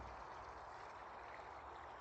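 Faint, steady outdoor background hiss with no distinct sound events.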